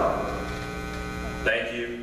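Steady electrical mains hum from the sound system during a pause in a man's speech, with a short spoken sound about one and a half seconds in.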